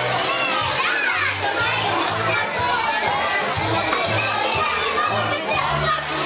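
Dance music with a steady bass line playing under the chatter and shouts of a roomful of young children.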